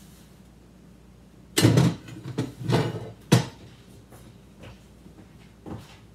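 Kitchen clatter: a few knocks and bumps of things being handled and set down on the counter, loudest about a second and a half in and ending in a sharp knock a little past three seconds, with small taps near the end.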